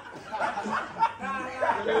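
Young men talking and laughing, with brief chuckles and exclamations.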